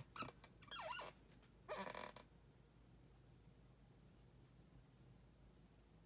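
A few short squeaks and a brief rustle in the first two seconds, typical of a desk chair creaking as someone gets up from it, then near silence with a faint steady room hum.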